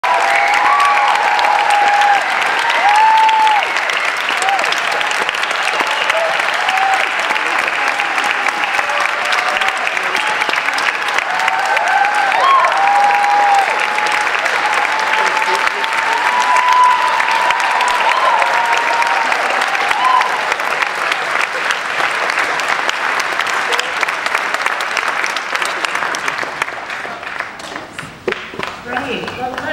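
A large audience applauding steadily, with whoops and cheering voices over the clapping for most of the first twenty seconds; the applause dies away near the end.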